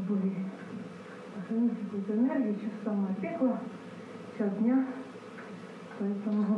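A woman's voice speaking indistinctly in short phrases, played through the room's speakers from a projected video.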